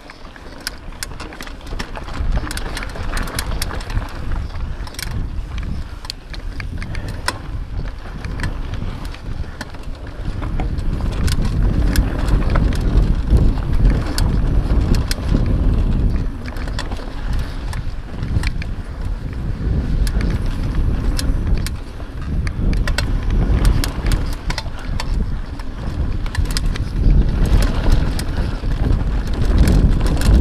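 Mountain bike riding a dry dirt trail, heard from a handlebar-mounted camera: a steady low rumble of tyres on dirt and wind on the microphone, with frequent ticks and rattles from the bike over the bumps. It gets louder about ten seconds in.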